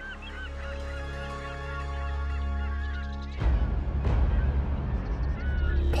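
Birds calling, many short honking calls repeated over a steady low drone. About halfway through, the drone abruptly becomes a rougher, heavier low rumble, and a few more calls come near the end.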